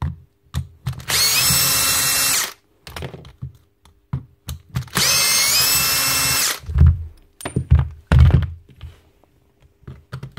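Cordless drill-driver with a long screwdriver bit running in two bursts of about a second and a half, each rising in pitch as it spins up, backing out the housing screws of an impact wrench. A few low knocks from handling the tool follow the second burst.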